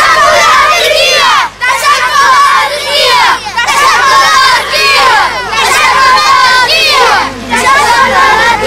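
A crowd of children shouting together, loudly, in phrases of a couple of seconds with brief breaks between them.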